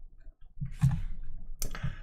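A few short clicks among soft breath and mouth sounds close to the microphone, with no words.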